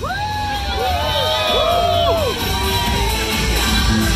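Crowd cheering, with several high whoops and shouts in the first two and a half seconds, over music with a steady bass.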